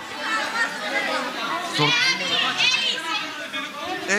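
Several people talking over one another, with some high-pitched voices about two seconds in.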